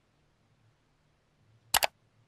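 A mouse-click sound effect, one quick sharp double click near the end, over a faint low hum. It is the click of an on-screen subscribe-button animation.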